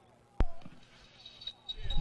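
A referee's wireless microphone switching on over the stadium PA: one sharp thump about half a second in, then near quiet until a steady high tone and a low rumble come up near the end, just before his announcement.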